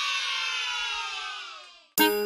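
A ringing tone of many pitches at once, sliding slowly down in pitch and fading out to silence just before the end.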